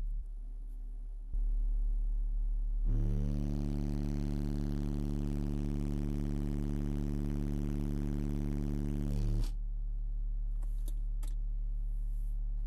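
Car-audio subwoofers playing a steady 36 Hz test tone inside the car's cabin for an SPL burp. The level steps up about a second in, then about three seconds in jumps to full output with a harsh, distorted buzz for about six and a half seconds before falling back to the lower steady tone.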